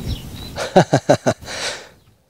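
A person laughing: about five quick bursts of laughter, then a breathy out-breath that fades away.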